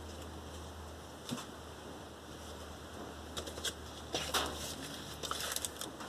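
Cardboard LP record sleeves being handled and slid over one another: faint rustles and a few light taps, most of them in the second half.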